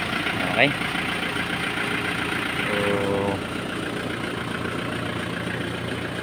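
Isuzu Bighorn's 4JG2 four-cylinder diesel idling steadily after its injection pump was refitted and timed.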